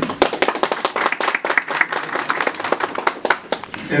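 Audience applauding: many hands clapping in a dense, irregular stream.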